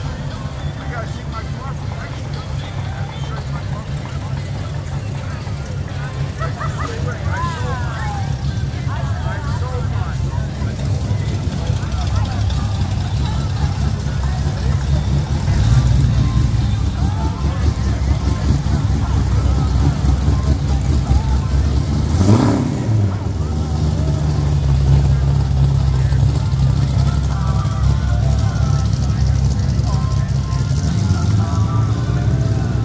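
A vehicle engine running at a steady low rumble, with the chatter of voices in the background. About three-quarters of the way through comes a short swooping sound, down and back up in pitch.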